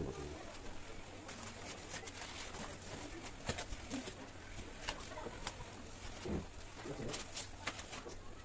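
Paper and cardboard wrapping rustling and crackling as it is pulled off a painted cabinet panel, with scattered sharp crackles.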